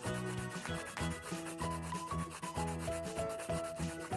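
Quick, scratchy rubbing strokes repeating several times a second, like colouring strokes, with soft background music holding a few notes underneath.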